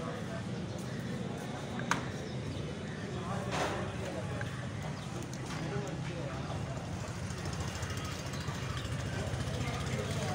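Busy street background: a steady low rumble of traffic with people talking. A few sharp knocks of a knife on a wooden chopping block come through it, the loudest about two seconds in.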